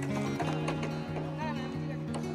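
Background music with a stepping bass line, at an even level.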